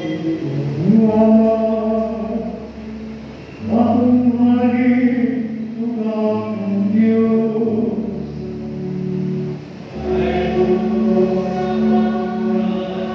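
Church choir singing a slow hymn at Mass, in long held notes, with breaks between phrases about four seconds in and near ten seconds.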